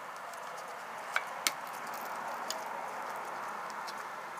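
A few sharp clicks of a press snap and the plastic-and-nylon bayonet scabbard being handled: two a little over a second in, a fainter one later, as the snap is popped loose and the flap pulled back off the sharpening stone. A steady hiss lies under them.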